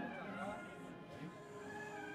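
Indistinct voices with music underneath, quieter than the talk on either side; a voice with a wavering pitch sounds early on, and a few held notes follow.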